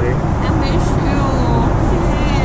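Steady cabin noise of a Boeing 777-200ER in cruise: a constant low rush of engines and airflow, with faint voices in the background.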